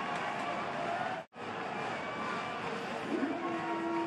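Football stadium crowd noise, fans' voices and chanting, which drops out for a moment just over a second in; a steady held note comes in near the end.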